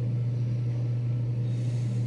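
A steady low hum with no change in pitch or level, under a faint even hiss.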